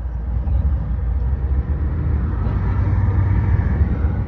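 Steady low road and engine rumble of a moving car, heard from inside the cabin, growing louder over the last couple of seconds.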